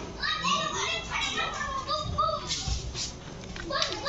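Children's high-pitched voices chattering and calling out in the background, with a few short clicks.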